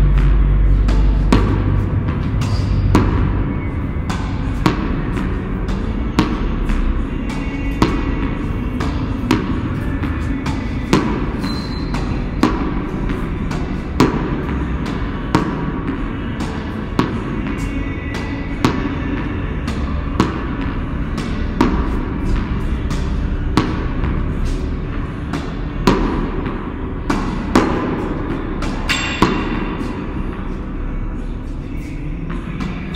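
Tennis ball struck again and again by a racket, a sharp pop about every second and a half, with lighter ball bounces in between, echoing off the concrete of an underground car park.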